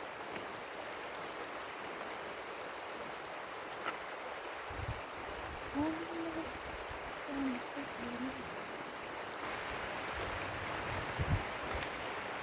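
A river running over a gravel bed makes a steady rushing. Two brief low tones come around the middle, and low bumps and rumbles appear from about halfway through.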